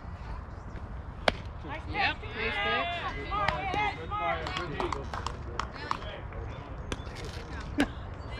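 Several voices calling out over one another. Two sharp cracks cut through them, one about a second in and one near the end.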